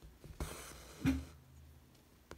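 Embroidery floss being pulled through fabric stretched in an embroidery hoop: a click, then a soft rasping swish of thread through cloth lasting about half a second, ending in a dull knock about a second in.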